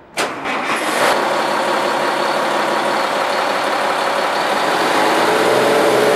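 Caterpillar diesel engine of the unloader's power unit cranking briefly on its starter and catching about a second in, then running steadily. Near the end its speed begins to rise.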